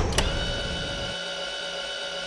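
Logo-intro sound effect: two quick sharp hits at the start, then a sustained synthetic ringing tone made of several steady pitches held together.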